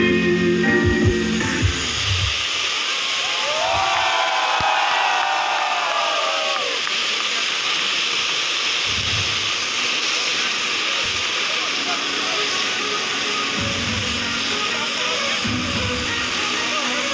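Steady hiss of ground spark fountains firing, as guitar music fades out in the first two seconds. A short burst of voices rises about four to six seconds in.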